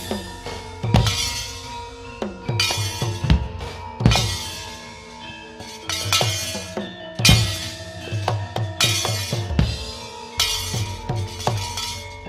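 Javanese gamelan playing for a battle dance: drum strokes and irregular loud metallic crashes every second or two over steady ringing gong-chime tones.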